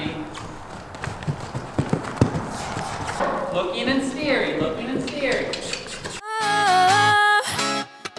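A horse cantering on soft dirt footing, its hoofbeats dull thuds with a few sharper knocks, against faint voices. About six seconds in, background music with steady held notes starts and drowns it out.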